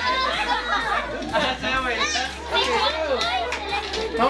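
Children's voices as they play, shouting and calling over one another, mixed with adults chattering.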